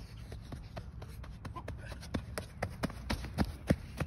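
Running footsteps on infield dirt, quick even steps about four to five a second, getting louder from about halfway through.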